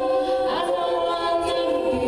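Treble a cappella choir of young women singing held chords in close harmony into microphones, with one voice gliding upward about half a second in.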